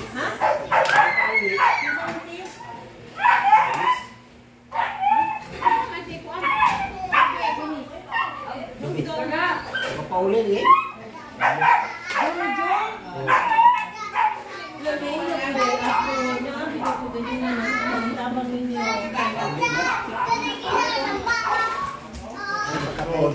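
Several people chatting at once, with children's voices among them and a few short clicks, over a faint steady hum.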